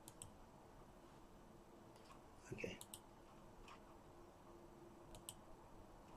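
Near silence with a few faint, sharp clicks scattered through it and a short, slightly louder cluster of clicks about halfway through.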